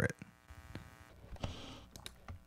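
Faint computer clicks, a few soft ticks spaced apart, with a brief soft hiss about one and a half seconds in.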